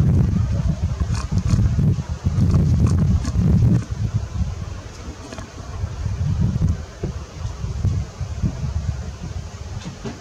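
Wind buffeting the camera microphone: a low rumble that comes in gusts, strongest in the first four seconds and easing after.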